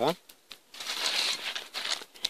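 Rustling of a cloth bag being handled, a dry crinkling noise that starts under a second in and lasts about a second.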